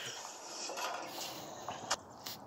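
A man's long, breathy exhale as his laughter dies away, fading over a second or so, with a sharp click near the end.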